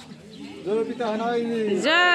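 A group of voices calling "Jai!" over and over in chorus at a Bathou rite, starting about half a second in and swelling, each call sliding up and down in pitch.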